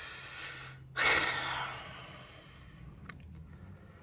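A man breathing close to the microphone: a soft breath, then a sudden sharp exhale about a second in that fades away, with a faint click near the end.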